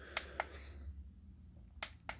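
A few small sharp clicks: the push button on an XTAR VC4 Plus battery charger being pressed to switch its readout, two clicks shortly after the start and another near the end.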